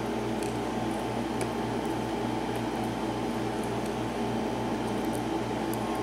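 Steady low mechanical hum of room background noise with a slight even pulse, and a few faint light clicks of metal tweezers against small lock parts.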